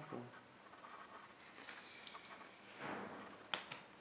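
Faint handling noise from PC power cables and a Molex connector being worked by hand, with a soft rustle and a few light clicks.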